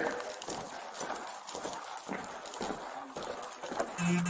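Footsteps walking across a hardwood floor, irregular knocks two or three a second.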